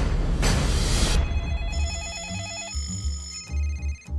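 A loud rushing whoosh of trailer music over the first second, then a telephone ringing with a fast electronic warbling trill for about a second and a half, over a low pulsing music bass.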